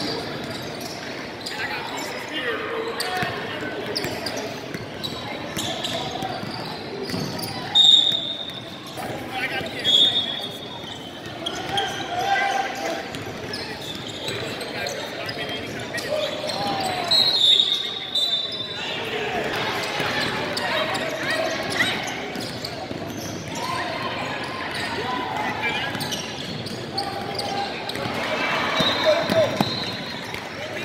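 Basketball being dribbled on a hardwood gym floor during a game, with a few short high squeaks and indistinct shouts and chatter from players and spectators echoing in the large hall.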